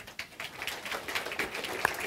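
Audience applauding: many hands clapping, the clapping starting right away and growing fuller and louder.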